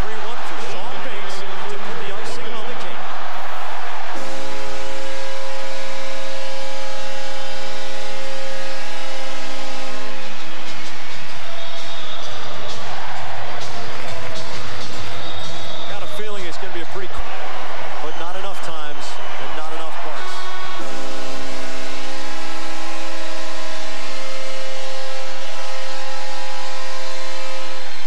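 Arena goal horn blaring in two long steady blasts, the first about four seconds in and lasting some six seconds, the second starting near the last third and running on, over a loud cheering crowd. It signals a home-team goal, here an empty-net goal.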